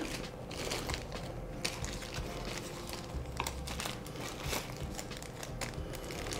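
Small plastic zip-top packets of dye chips crinkling and rustling as they are handled and sorted, with scattered soft crackles and a few sharper clicks.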